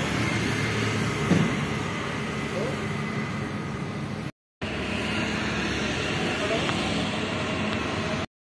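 Street ambience: a vehicle engine running steadily under general traffic noise, with faint voices in the background. The sound cuts out for a moment a little past halfway.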